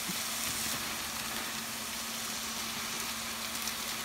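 Browned ground pork sausage sizzling in a wok over a gas burner that has just been turned down, a steady even hiss.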